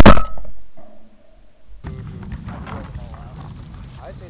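A single very loud shotgun shot, sudden, with its report fading out over about a second. About two seconds in, a steady low rumble of wind on the microphone follows.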